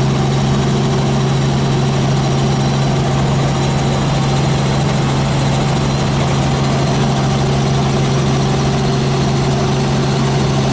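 Robinson R44 helicopter in flight, heard from inside the cabin: a loud, steady drone of its piston engine and rotors, with a strong low hum that holds one pitch throughout.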